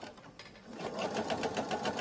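Electric sewing machine starting up about two-thirds of a second in, then stitching a patchwork seam at a steady, rapid rhythm.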